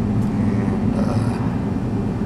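Steady low rumble of a vehicle's engine and tyres on the road, heard from inside while driving at low town speed.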